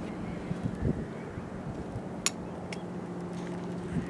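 A steady low mechanical hum sets in about a second and a half in, over faint wind noise, with one sharp click a little past two seconds in.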